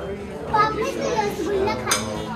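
A young child's high voice, vocalising playfully without clear words.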